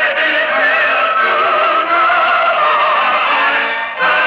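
Closing music of a radio drama: a sung melody of long held notes that waver in pitch, over instrumental accompaniment.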